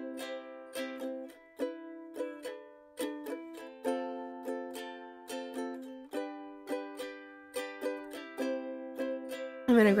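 Ukulele background music: plucked chords in a steady rhythm, each note dying away quickly.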